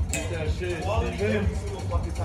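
Faint voices talking in the background over a low, steady hum.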